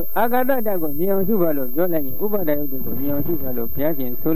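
A man's voice speaking without pause in Burmese: a monk giving a Dhamma talk.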